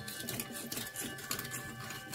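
Knife slicing into a whole pike on a plastic cutting board, heard as a faint, irregular run of small clicks and scrapes as the blade works through skin and flesh. Quiet background music with steady held notes runs underneath.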